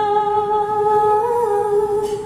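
A singer holding one long vocal note into a microphone, the pitch wavering briefly upward a little past halfway.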